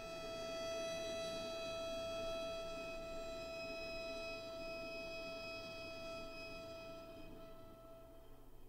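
A single bowed string harmonic, a pure high tone held pianissimo on one steady pitch, swelling in over the first second and slowly dying away over the last couple of seconds.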